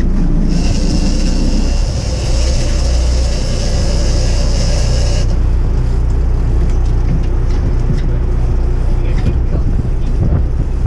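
Sport-fishing boat's engines running with a steady low drone. From about half a second in, a high-pitched steady buzz sounds for about five seconds and then stops suddenly.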